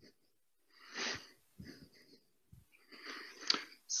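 A man breathing heavily close to a headset microphone, with a strong breath about a second in and another near the end, and a single sharp click shortly before the end.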